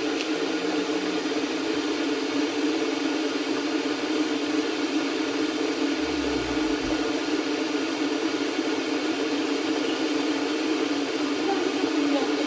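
A steady mechanical whir from a kitchen appliance runs at an even level throughout, with a short low rumble about halfway through.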